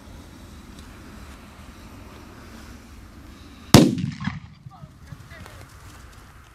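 A Cobra 6 firecracker exploding once, nearly four seconds in: a single sharp, loud bang followed by a rumbling tail that dies away over about a second. Steady wind noise on the microphone can be heard before it.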